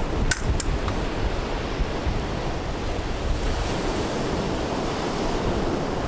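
Ocean surf washing steadily onto a beach, with wind rumbling on the microphone. A couple of short, sharp clicks sound within the first second.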